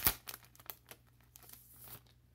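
Clear plastic sticker sleeve crinkling as it is pulled open and handled, with one sharp crackle right at the start and lighter, scattered crackles after it.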